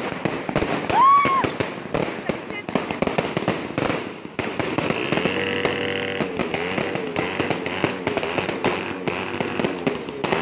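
Fireworks going off in a fast, continuous run of pops and crackles as the shots burst overhead. A loud voice cries out about a second in.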